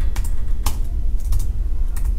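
Computer keyboard keys being typed: a handful of separate keystroke clicks at an unhurried pace, over a steady low hum.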